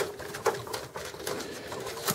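A few light clicks and taps of a flat ribbon cable and its plastic connector being handled inside a desktop computer case.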